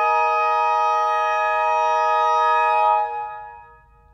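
Reed quintet holding one steady chord of reed instruments, released about three seconds in and dying away.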